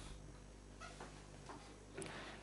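Near silence: room tone with a faint steady hiss and low hum.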